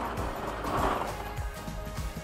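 Background music, with plastic lotto balls rattling as a hand stirs them in a clear ball drum and picks one out, fading over the first second or so.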